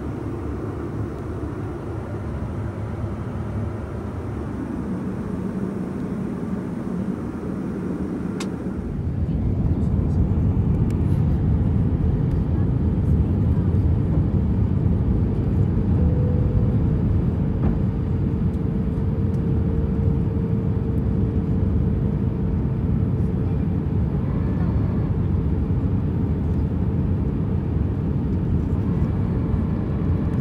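Airbus A320-214 cabin noise during the descent: the steady roar of its CFM56 engines and the airflow past the fuselage. It becomes louder and deeper about nine seconds in, right after a single click.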